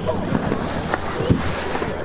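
Skatepark riding sounds: BMX tires rolling on concrete with a few sharp clacks and a low thump about two-thirds of the way through, over background voices.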